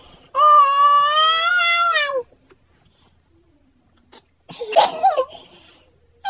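A young child's high-pitched voice: one long drawn-out wail lasting about two seconds, dipping in pitch as it ends. After a pause, a shorter wavering vocal sound comes near the end.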